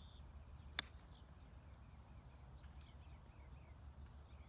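A golf driver strikes a teed ball once with a single sharp crack just under a second in. Faint short chirps of small birds repeat throughout.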